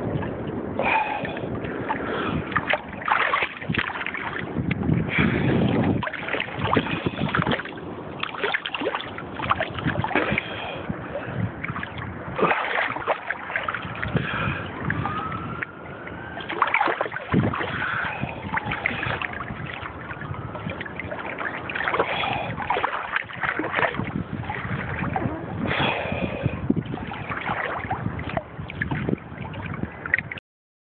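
Small sea waves sloshing and slapping close to the microphone at the water's surface, with frequent irregular splashes.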